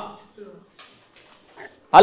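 A man's speaking voice trails off, followed by a short pause holding only a few faint, brief, indistinct sounds from the room.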